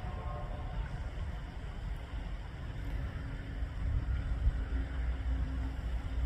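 Low, steady outdoor rumble with no distinct events, with a faint steady hum joining about three seconds in.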